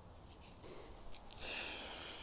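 A person sniffing a bunch of freshly picked lemon myrtle leaves held to the nose: a few faint ticks, then a hissing inhale through the nose starting about one and a half seconds in.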